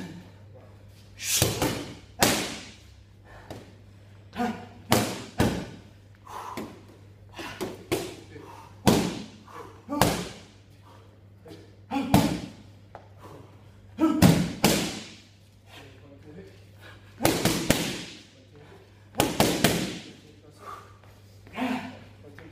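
Boxing gloves striking focus mitts, sharp slaps coming as single punches and quick doubles every one to three seconds, each with a short echo.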